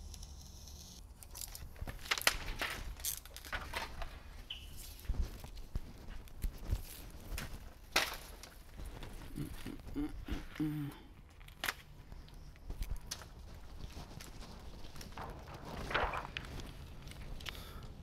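Window tint film being trimmed with a blade and handled on a workbench: scattered crinkles, taps and clicks over a steady low hum.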